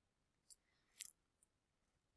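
Near silence with two faint clicks about half a second apart, from a computer mouse as the page is scrolled.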